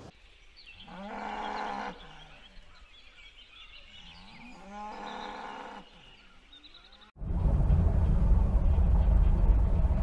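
A cow mooing twice, each moo a second or so long, with a few seconds between. About seven seconds in, a loud steady low noise starts abruptly and is louder than the moos.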